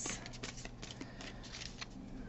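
A new oracle card deck being shuffled by hand: a faint, quick run of soft papery clicks.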